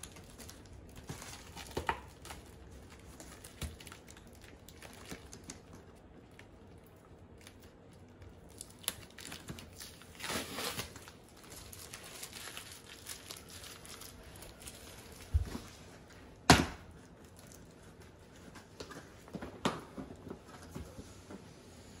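Cardboard shipping box being opened and unpacked by hand: scattered rustling, crinkling and light clicks of cardboard and packing, with a noisy burst lasting about a second around ten seconds in and a single sharp knock, the loudest sound, a little past the middle.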